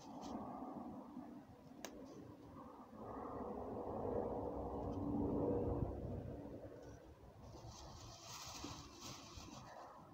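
Faint sounds of outdoor food prep: a single sharp click about two seconds in, then a low rumble that swells and fades in the middle. Near the end a plastic roasting bag crinkles as it is handled.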